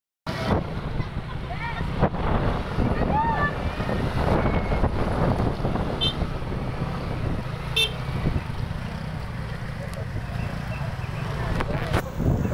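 Roadside traffic: a steady low rumble of idling motorcycle and car engines with voices in the background, and two short horn beeps about halfway through, the second under two seconds after the first.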